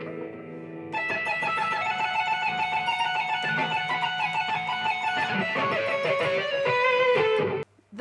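Fender Stratocaster electric guitar playing a held note, then about a second in a fast run of pick-tapped notes alternating between upper frets; the playing cuts off suddenly near the end.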